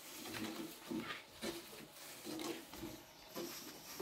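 Long, thin wooden rolling pin working flatbread dough on a wooden board: a run of short, uneven low knocks and rumbles, about two or three a second, as the pin is rolled and pressed back and forth.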